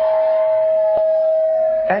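A loud, steady high tone held at one unchanging pitch, dropping away near the end as a voice comes in.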